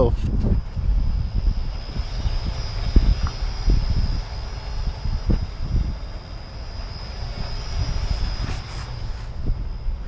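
Wind buffeting the camera microphone: an uneven, gusting low rumble. Under it there is a faint steady high-pitched tone and a few small handling knocks.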